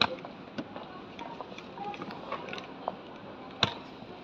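Hall ambience in a large airport terminal: scattered clicks and knocks from footsteps and a wheeled suitcase rolling over the hard floor, with faint voices in the background. The sharpest clicks come right at the start and about three and a half seconds in.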